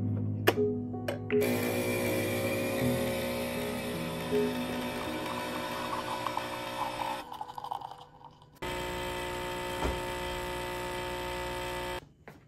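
Capsule espresso machine's pump buzzing steadily as it brews coffee into a glass, after a couple of sharp clicks as the lever is closed.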